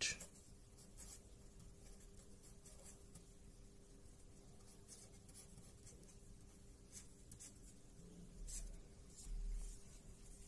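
Felt-tip marker writing on paper: faint, scattered scratchy strokes. Two low thumps come near the end.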